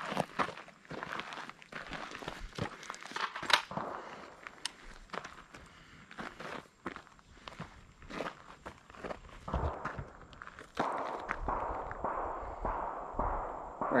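Footsteps crunching and scuffing on dry leaves and dirt, with scattered small clicks and crunches. From about two-thirds of the way in, a steadier rustling noise takes over.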